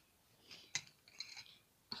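Quiet handling of wooden coloured pencils: a light click a little under a second in, then a soft scratchy rustle.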